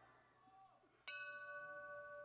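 Municipal palace bell rung by pulling its rope: one strike about a second in, after near silence, leaving a steady ringing tone with several overtones that slowly fades.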